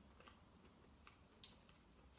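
Near silence: room tone with a few faint, short clicks, the sharpest about one and a half seconds in.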